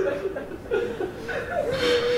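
A man sobbing: short, broken, wavering cries of the voice in grief.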